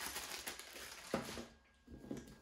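Clear plastic packaging crinkling as a bagged cable gun lock is handled, with a short knock a little over a second in.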